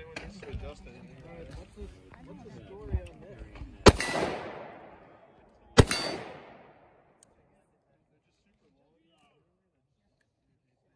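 Two shots from an AR-style rifle, about two seconds apart, each followed by an echo that fades over about a second.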